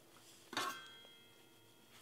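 A pot lid clinks against the rim of a stainless steel pot once, about half a second in, and rings briefly as it fades.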